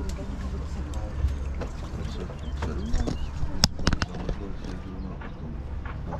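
Background chatter of boat passengers over a steady low rumble, with a quick cluster of sharp clicks about two-thirds of the way through.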